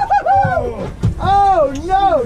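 Excited, high-pitched whoops and cries from people as a big fish is netted beside the boat: several rising-and-falling calls, over a low rumble of wind and water.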